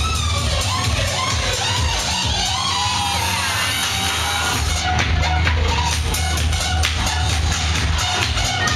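Loud electronic dance music playing over a club sound system, with heavy bass and a steady beat; the highs drop away briefly about five seconds in.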